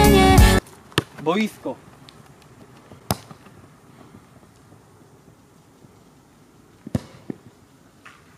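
A pop song with singing cuts off abruptly within the first second. A brief gliding vocal sound follows. Then, over a quiet outdoor background, come sharp thuds about three seconds in and again near the end, the sound of a football being kicked.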